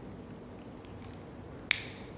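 A whiteboard marker's cap pushed shut: one sharp click near the end, over quiet room tone.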